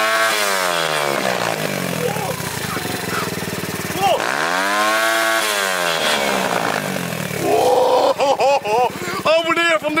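Pitbike engine revved hard twice, the pitch climbing and then falling away each time. Brake cleaner is sprayed into it, so it spits a flame from the exhaust.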